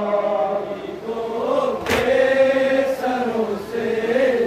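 A group of men chanting an Urdu nauha (lament) in unison, drawing out long, slowly wavering held notes. A single sharp slap lands about halfway through, a chest-beating (matam) strike, with a fainter one soon after.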